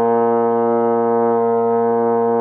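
Marching baritone horn sounding a single low note, held long and steady at an even volume during long-tone practice.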